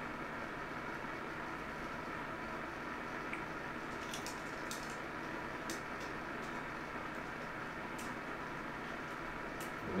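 Steady hum and hiss from a CB radio test bench, the radio keyed up on AM with a test tone fed into it. A few faint clicks come in the middle.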